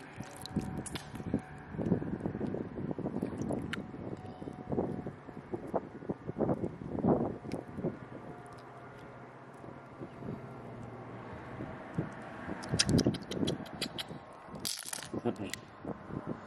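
A hand sloshing and stirring through shallow seawater over sand and shells: irregular splashes and swishes, quieter for a few seconds in the middle, then busier again with a run of sharp clicks near the end.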